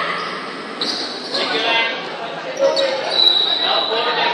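Children's voices echoing in a large hard-floored hall, with a few short thuds of bare feet on the floor during a taekwondo pattern.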